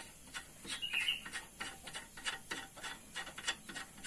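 Light, irregular metallic clicks and ticks as a nut is run down by hand onto the threaded stud of a car's stabilizer (sway-bar) link, with a short high chirp about a second in.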